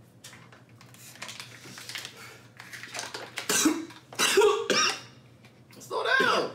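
A man coughing hard from the burn of extra-spicy instant ramen: faint breaths and small clicks at first, then a run of loud, voiced coughs starting a little past halfway.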